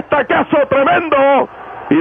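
Speech only: a male radio play-by-play announcer talking fast in Spanish, heard through a narrow-band AM broadcast recording.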